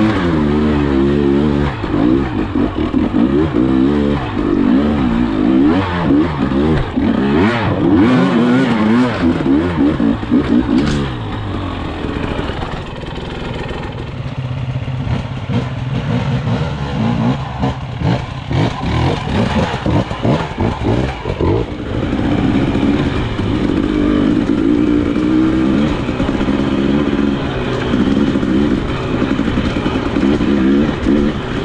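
KTM 300 XC-W two-stroke single-cylinder engine revving up and down in short bursts while climbing a rocky trail. About midway it drops to a lower, steadier run with a series of knocks and clatter, then revs up and down again near the end.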